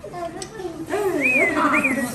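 A high-pitched voice with sliding, rising-and-falling pitch, forming no clear words.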